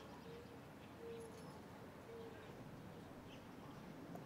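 Near silence: faint outdoor background with three short, faint steady tones about a second apart in the first half.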